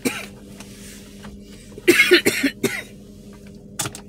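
A man coughing, several coughs in a quick burst about halfway through, in a car's cabin. A short sharp click comes near the end.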